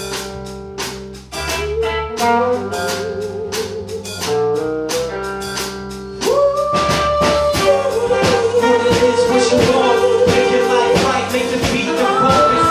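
Live band playing the opening of a song: drum kit keeping a steady beat under electric guitar, bass and horns, with long held melody notes. The band gets louder about six seconds in.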